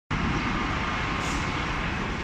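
Steady, loud background noise with a low rumble, starting abruptly at a cut: the ambient din of a railway station exit, likely with trains or traffic in it.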